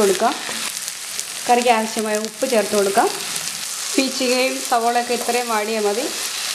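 Ridge gourd pieces sizzling in hot oil in a frying pan, stirred and scraped with a spatula. A voice talks over it twice, about a second and a half in and again from about four seconds.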